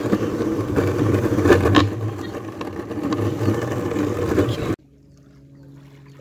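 Rumble of small wheels rolling over rough exposed-aggregate concrete, with a couple of jolts about a second and a half in. It cuts off abruptly near the end, giving way to a quiet steady low hum.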